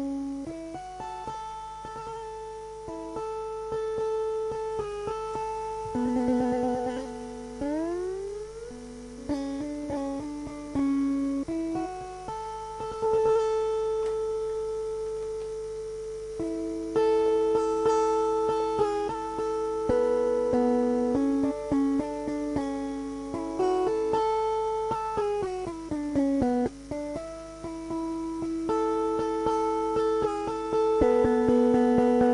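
Krar, the Eritrean lyre, played solo as a slide instrument: a metal spoon is pressed on the plucked strings, giving held melodic notes that glide in pitch. There is an upward slide a little before eight seconds in and a run of downward slides around twenty-five seconds in.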